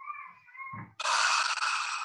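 A man's wordless vocal sounds while hesitating over an answer: a faint, thin high-pitched hum in the first second, then a long, breathy audible breath from about a second in.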